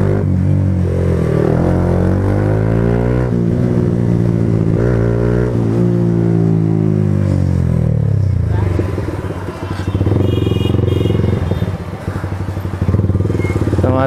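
Motorcycle engine heard from the rider's own bike in town traffic, its pitch rising and falling several times as it accelerates and changes gear. About two-thirds of the way through it drops to a low, slow pulsing beat as the bike slows and pulls up.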